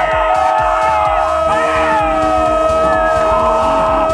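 A television football commentator's long, drawn-out goal cry, "Gol!", held at one pitch, over background music.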